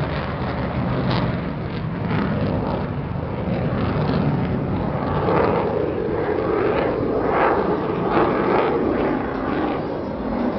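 McDonnell Douglas F/A-18 Hornet fighter jet flying past over the ship, its twin jet engines making a loud, steady rushing noise that swells from about halfway through.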